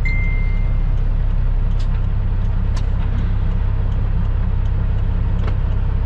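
Diesel engine of a Kenworth W900 truck running at low speed, heard from inside the cab as a steady low rumble. A brief high steady tone sounds for about a second at the start, and there are a few faint clicks.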